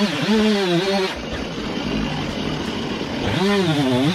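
Two-stroke gas chainsaw revving high with a wavering pitch. About a second in it drops to a rougher sound without the clear whine, then revs up again near the end as the bar goes into a log.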